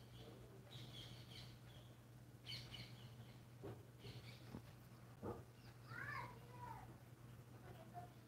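Near silence: a low steady hum, with a few faint, distant bird calls and a short falling call about six seconds in.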